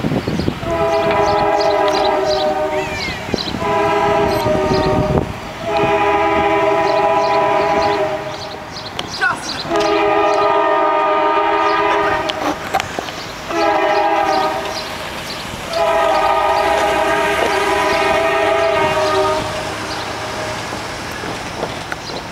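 Multi-chime locomotive air horn on an approaching CSX freight train sounding for the grade crossing: six blasts of one to three seconds each, with the train's rumble in the gaps and after the last blast.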